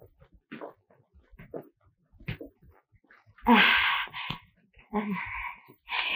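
Breathy vocal sighs, one loud exhalation about three and a half seconds in and a softer one about five seconds in, after a stretch of faint scattered clicks and rustles.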